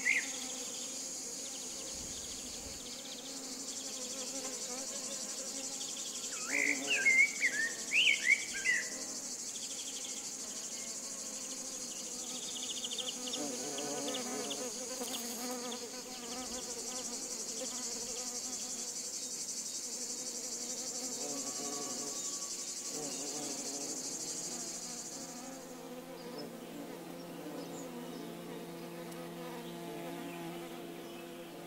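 Bees buzzing steadily over a continuous high-pitched insect drone that stops about 25 seconds in. A few brief chirps stand out at around seven to nine seconds, and a steadier, closer hum takes over near the end.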